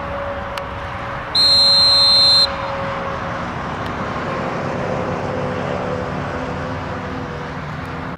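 One loud, steady referee's whistle blast lasting about a second, starting about a second and a half in, blowing the play dead after a tackle. A steady outdoor background of field and sideline noise runs underneath.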